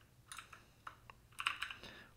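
Typing on a computer keyboard: a few scattered, faint keystrokes, then a quicker run of several keys about a second and a half in.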